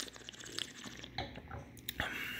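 Faint wet sipping and swishing of red wine in the mouth during a tasting, with a few small clicks. A light knock near the end as the wine glass goes back down on its wooden coaster.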